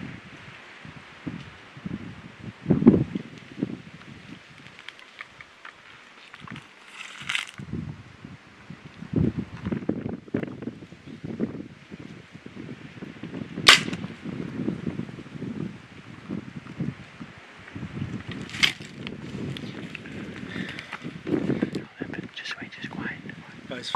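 Compound bow dry-fired with no arrow nocked: a single sharp crack about two-thirds of the way in as the string snaps, followed by a weaker second crack a few seconds later. Soft rustling and handling noise throughout.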